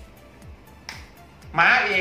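Quiet background music with a light ticking beat, broken by one sharp click about a second in; a man's commentary voice comes in near the end.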